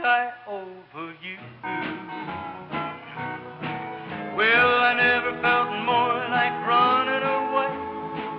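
Country band music with no lyrics sung: a sliding, wavering lead melody over plucked guitar accompaniment.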